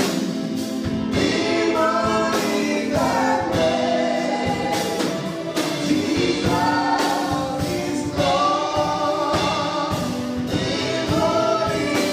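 Gospel worship song sung by a choir.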